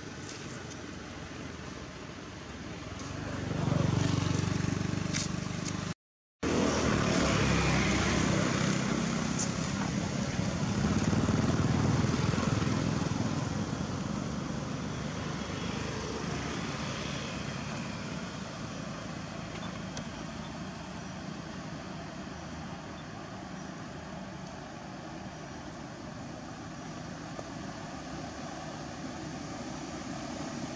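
A motor vehicle's engine passing nearby over a steady outdoor background, swelling louder for several seconds and then slowly fading away. The sound cuts out completely for a split second about six seconds in.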